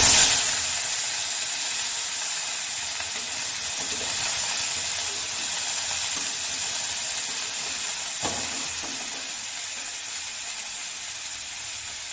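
Chopped potatoes and broccoli tipped into hot oil in a kadhai, sizzling loudly at once and settling into a steady frying hiss that grows gradually quieter. A single knock on the pan about eight seconds in.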